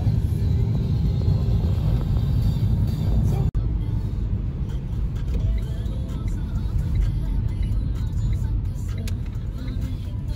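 Road noise inside a moving car on wet streets: a steady low rumble of engine and tyres, cut off for an instant about three and a half seconds in.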